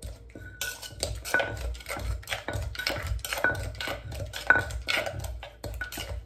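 Metal spoon and wooden pestle stirring and knocking chili paste in a clay mortar: quick repeated knocks and clinks, about four a second, some with a short ringing note.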